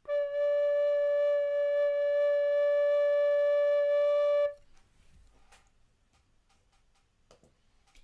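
Soprano-range recorder playing one steady note, pitched near 580 Hz, held for about four and a half seconds and then stopping. The note is strongest at its lowest pitch, with weaker overtones above it.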